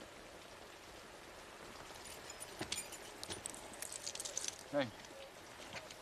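Steady rain falling, with a quick run of small metallic clicks and rattles through the middle.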